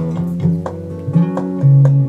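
Acoustic guitar accompaniment: picked and strummed notes over sustained low bass notes, changing every half second or so.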